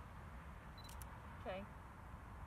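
DSLR camera taking a photo: a short high beep as it focuses, then the shutter's double click, mirror and shutter about a tenth of a second apart, a little before one second in.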